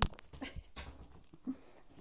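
A sharp knock right at the start, then quiet, short sounds from a saluki close by, amid the rustle of the phone being handled.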